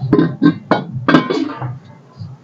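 Metal cooking pots and a kadhai clanking against one another as one is pulled from a stack, with four or five sharp, ringing clanks in the first second and a half.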